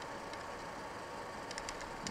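Steady background hiss with a few faint, short clicks, a small cluster of them about one and a half seconds in, from a stylus working on a graphics tablet as words are handwritten.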